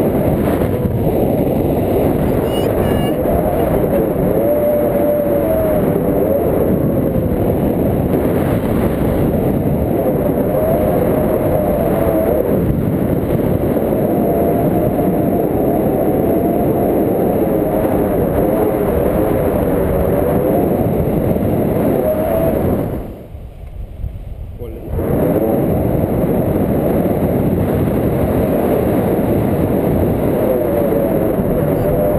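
Loud wind rushing over a pole-mounted action camera's microphone in paraglider flight, with a wavering whistle in it. The noise drops away for about two seconds near the end.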